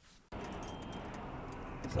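Steady road and engine noise heard inside a moving car's cabin, starting about a third of a second in, with faint light clicks over it.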